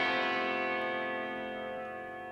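A held electric guitar chord ringing out and slowly fading.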